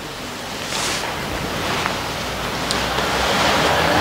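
Steady hiss of microphone and room noise, slowly growing louder, with a couple of faint clicks.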